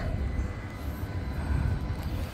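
Outdoor ambience on an open harbourside deck: a steady low rumble that wavers in strength, with no clear single event.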